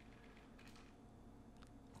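Faint, irregular keystrokes: typing on a computer keyboard.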